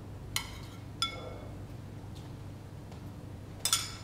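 Two light ringing clinks of a small ceramic bowl, about half a second apart, as gremolata is sprinkled from it, then a quick clatter near the end as the bowl is set down, over a low steady hum.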